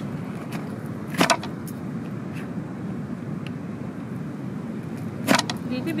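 Two sharp clacks about four seconds apart from a plastic kimchi cutter being pushed down through kimchi in its container, over the steady low rumble of a lit gas camping stove burner.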